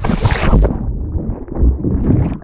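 Water splashing hard as a jet ski capsizes and the camera plunges into the lake. After about two-thirds of a second the sound turns muffled and dull, with low thumps and rumbles heard from underwater.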